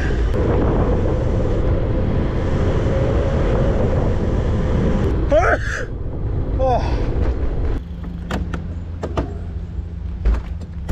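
Wind rushing over the microphone and tyre noise as a mountain bike coasts down a paved road, dropping off sharply about eight seconds in as the bike slows. Two short sliding tones come midway, and a few sharp clicks follow near the end.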